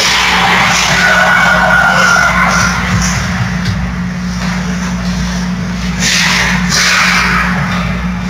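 Ice hockey skates carving and scraping on the rink ice during play, with louder scraping stops about six to seven seconds in. A steady low hum runs underneath.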